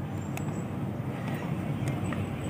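Steady low background noise between stretches of talk, with two faint clicks, one about half a second in and one near the end.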